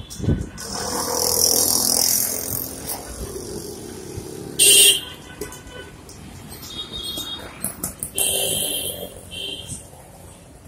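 Busy city street traffic: vehicles passing with a rushing sound, and a short loud horn blast about halfway through, followed by more brief toots.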